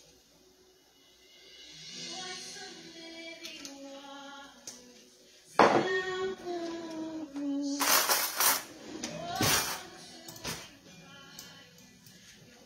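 Background music with a woman singing, coming in louder a little past the middle. A few sharp clattering noises sound over it in the second half.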